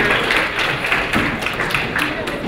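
Audience applauding in a large hall: a dense patter of many hands clapping.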